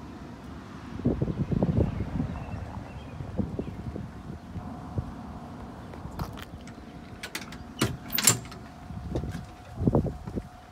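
Car door and handling noise: a run of low knocks and rustling, then scattered sharp metallic clicks, the loudest about eight seconds in, and a thump near the end.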